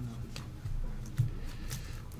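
A few light ticks and rustles of 1977 Topps cardboard baseball cards being shuffled and slid apart by hand, over a steady low hum.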